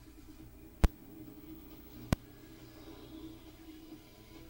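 Faint soundtrack from a television, broken by two sharp clicks, one just under a second in and a louder-than-background second one about a second later.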